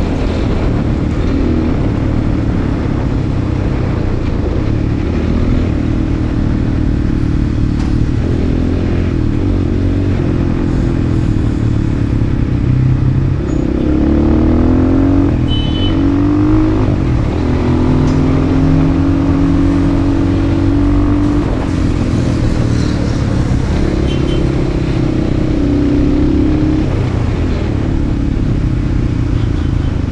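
Enduro motorcycle engine running under way, heard from on the bike, with the revs climbing and dropping back a few times around the middle.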